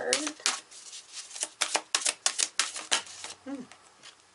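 A deck of chakra oracle cards being shuffled by hand: a run of quick, irregular card clicks and flicks.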